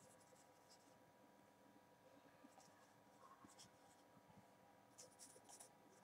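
Faint strokes of a marker pen writing on a whiteboard, coming in a few short scratchy bursts over near silence.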